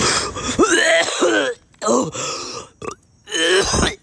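A man's rough, wordless vocal noises from the throat, like coughing and clearing his throat, in four bursts with short silent gaps between them.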